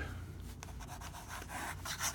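Pen nib scratching across paper in quick scribbled strokes, a dry rubbing hiss that grows louder in the second half.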